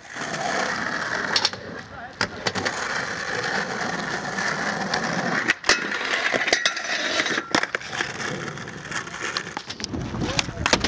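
Skateboard wheels rolling on rough concrete with a steady rumble, broken by several sharp clacks of the board from tricks and landings, and the board sliding along a ledge around the middle.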